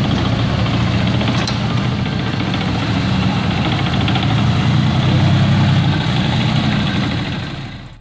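Harimau medium tank's engine running as the tank drives slowly across dirt. It swells a little midway and fades away near the end.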